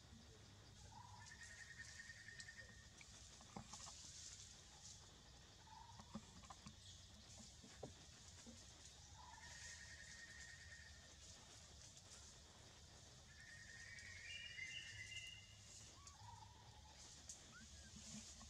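Quiet forest ambience: faint animal calls, a short rough trill repeated three times about four seconds apart, each lasting about a second, over a faint steady high hiss with a few soft chirps and ticks.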